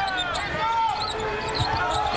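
Live basketball game sound: a ball bouncing on the court amid arena noise and voices.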